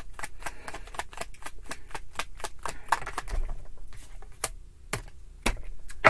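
A deck of tarot cards shuffled by hand: a quick run of light card clicks and flicks, thinning out in the second half, with a few sharper snaps shortly before the end.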